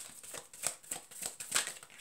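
A deck of oracle cards shuffled in the hands: a quick, irregular run of soft card clicks and snaps.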